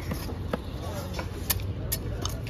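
Fish knife knocking sharply against a wooden log chopping block while cutting a large yellowfin tuna: one knock about half a second in, then two close together near the end, over a steady low rumble.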